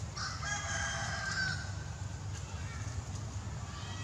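A rooster crowing: one long call of about a second and a half, with another crow starting near the end.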